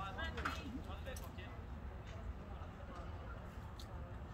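Faint, distant voices of spectators and players in the background over a low, steady rumble; the clearest voices come in the first second or so.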